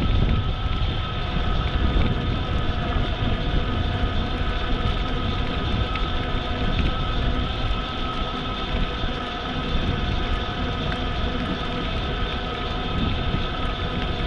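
Wind rushing over the microphone of a bicycle moving at steady speed, with tyre and riding noise and a faint steady whine that holds one pitch throughout.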